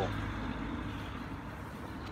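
Steady background hum of distant road traffic, easing off slightly.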